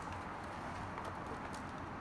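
Faint soft taps and rustles of hands tossing sliced button mushrooms with spices in a plastic container, over steady low background noise.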